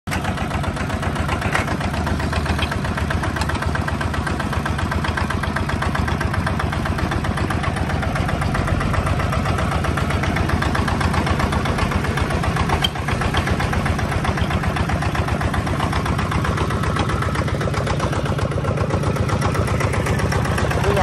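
Kubota RT155 single-cylinder diesel engine of a walking tractor with rotary tiller, running steadily with a fast, even chug. The sound briefly dips about thirteen seconds in.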